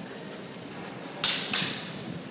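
Longboard wheels rolling on a smooth concrete floor, then about a second in a sudden loud hiss as the urethane wheels break loose and slide sideways, in two quick bursts that fade out.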